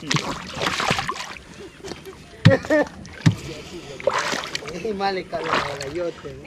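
Shallow lake water splashing and sloshing around a person wading beside a small boat, in two spells: about the first second and again around four seconds in.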